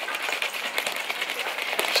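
Plastic baby formula bottle shaken hard back and forth, the blender ball inside rattling rapidly against the walls as the powdered formula is mixed into the water.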